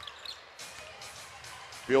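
Faint arena sound of an NBA game on a TV broadcast: low crowd murmur with a basketball being dribbled on the court. A commentator's voice comes in at the very end.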